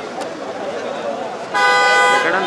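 Men's voices chattering in the background, then a vehicle horn sounds about one and a half seconds in: one loud, steady honk that runs on past the end.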